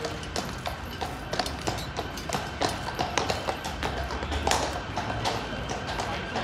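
Shod horse hooves clip-clopping on hard paving, mixed with the heavy boot steps of a walking guard: sharp, irregular clicks several times a second.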